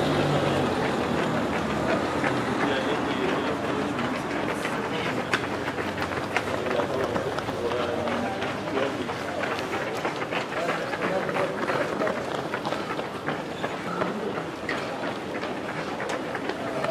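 Footsteps of many runners on asphalt as a pack passes, a dense, irregular patter of quick steps.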